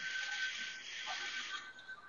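Faint steady hiss of background noise with a thin, constant high-pitched tone running through it, carried over a video-call audio line.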